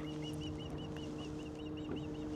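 A bird calling in a quick, even series of short high chirps, about seven a second, over a steady low hum.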